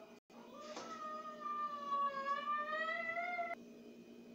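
One long, wavering, meow-like call of about three seconds, dipping and then rising in pitch, cut off abruptly near the end.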